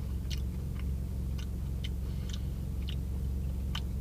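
A man chewing a soft, breaded pizza roll, soggy rather than crunchy, with small scattered mouth clicks, over a steady low hum.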